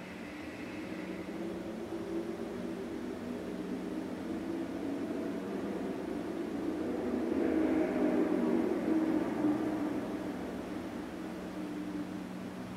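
Low rumbling noise that swells to a peak about eight seconds in and then fades, over a steady low hum.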